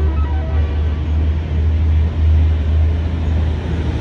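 A passing train's steady low rumble and running noise. The last notes of a melody die out in the first half-second.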